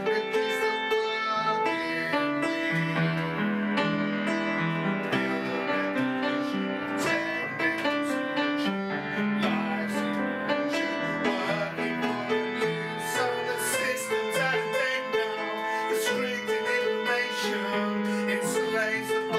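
A song: a man singing with upright piano accompaniment.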